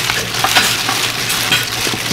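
Bare hands tossing leafy greens in red pepper seasoning in a stainless steel mixing bowl: steady rustling of the leaves with scattered crackles.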